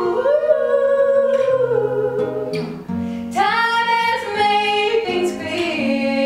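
Two women, a mezzo-soprano and a second vocalist, sing long held notes in close harmony over acoustic guitar chords. A new, higher phrase comes in about halfway through.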